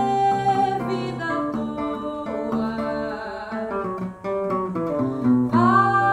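Seven-string acoustic guitar (violão de sete cordas) playing a run of plucked notes between sung phrases of a samba. A woman's held sung note ends about a second in, and her voice comes back in near the end.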